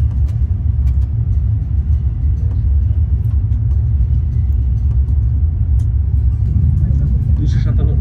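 Steady low rumble of a Haramain high-speed train running at speed, heard from inside the passenger cabin, with a few faint clicks.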